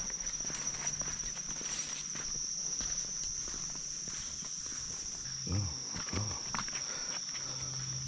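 Footsteps on a dirt forest trail under a steady, high-pitched insect drone, with two short low sounds a little past halfway.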